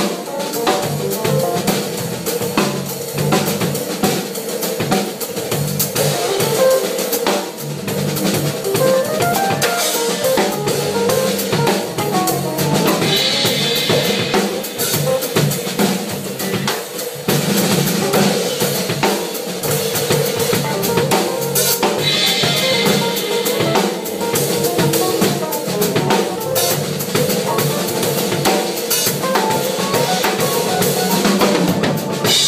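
Odery drum kit played continuously at full volume: a dense run of bass drum, snare and tom strokes with cymbals, unbroken throughout.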